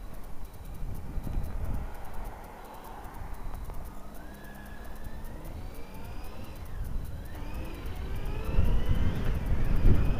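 Honda Hornet 900 motorcycle's inline-four engine pulling away from a junction and accelerating, over road and wind rumble. From about four seconds in, its whine climbs in pitch through the gears, dipping at each of two quick gear changes, then climbs again.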